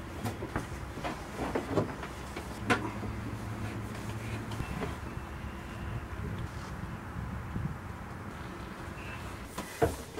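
Scattered knocks and clicks of a hose fitting and hose being handled and screwed back in under a boat's galley sink, most of them in the first three seconds, over a steady low hum.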